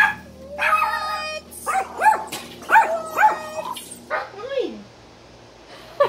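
Dog yipping and barking in a quick run of short calls, then giving one falling whine a little after four seconds in.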